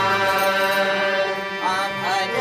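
Harmonium holding steady chords for a bhajan, with a singing voice coming in near the end.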